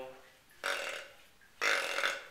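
Primos Hardwood Grunter deer grunt call blown twice: two short, rough grunts about a second apart, imitating a whitetail buck's grunt.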